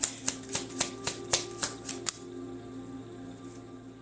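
A deck of tarot cards being shuffled by hand: crisp card taps about four a second for two seconds, then stopping. Soft background music with held tones plays underneath.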